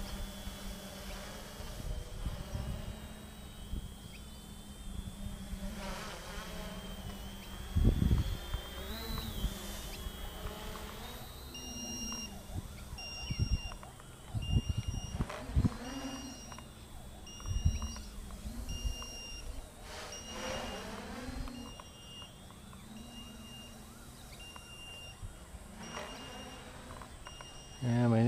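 Multirotor drone's motors buzzing overhead, the pitch wavering as the throttle changes. From about 11 seconds in, a steady beeping about once a second joins, typical of a low-battery alarm. There are a few low thumps along the way.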